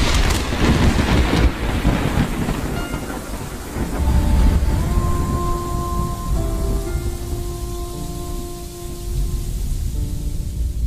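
Thunder rolling with a hiss like rain, a second low roll swelling about four seconds in, under intro music whose held notes enter partway through.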